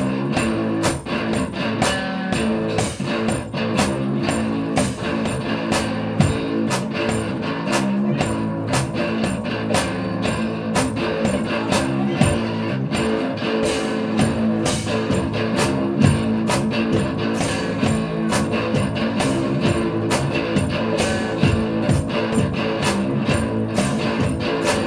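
Live one-man-band rock song: an amplified hollow-body guitar played over a steady, driving drum beat.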